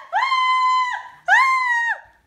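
A female voice screaming "Ahh!" in fright, two long high-pitched held screams, each dropping in pitch as it breaks off.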